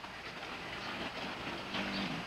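Steady low rumble and hiss of background noise, with no distinct event standing out.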